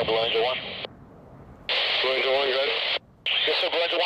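Air-band radio voice transmissions through a scanner with a hiss behind them, in three short bursts. The hiss and voice cut off sharply about a second in and again briefly about three seconds in, as each transmission ends.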